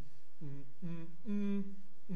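A man humming through tightly twisted, closed lips: two short falling hums, then a longer steady hum near the end.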